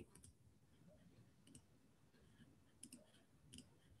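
Near silence with a few faint, irregularly spaced computer mouse clicks, made while a screen share and a video player are being opened.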